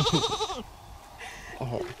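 A short, quavering, bleat-like cry lasting about half a second, with a strongly wavering pitch. Brief talk follows near the end.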